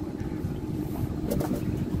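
Steady wind and water noise on an open wooden boat moving on a wide river, with a low steady rumble underneath.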